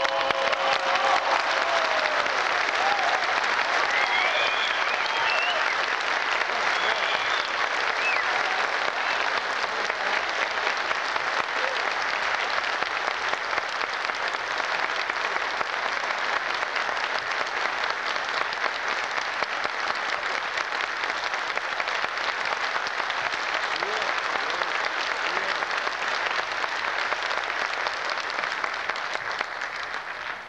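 Audience applauding a barbershop quartet, starting as the quartet's last held a cappella chord ends about a second in. The clapping stays steady for a long time, then slowly dies down near the end.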